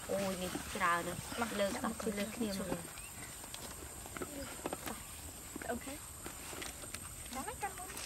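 Women's voices talking quietly for the first three seconds. After that, faint scattered clicks and knocks as food tins and trays of bread rolls are handled at a wooden table, with brief bits of voice.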